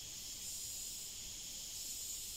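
Faint, steady, high-pitched hiss of forest ambience, with no distinct events.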